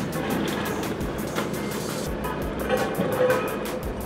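Road roller's engine running, with music playing over it.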